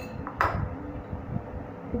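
Spoon clinking against a glass mixing bowl as batter is stirred: a sharp clink about half a second in, then quieter stirring.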